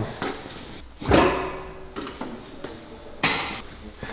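A car door shut with a heavy thud about a second in, followed by a sharper single knock near the end.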